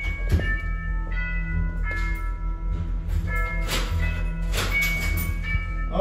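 Background music: bell-like notes that change in steps over a steady deep bass, with a few sharp percussion hits.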